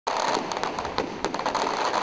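Firecrackers going off in a rapid, irregular string of sharp pops over a steady crowd din.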